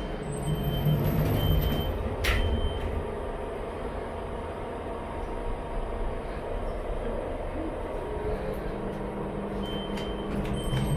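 Passenger lift running, heard from inside the car: a steady low hum and rumble, heaviest in the first three seconds, with a few short high beeps early on and again near the end, and a sharp click about two seconds in.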